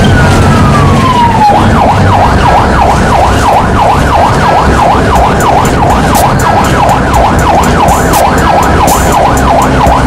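Ambulance siren heard from inside the vehicle's cab: a falling wail that, about a second and a half in, switches to a fast yelp sweeping up and down about three times a second, over the ambulance's engine running.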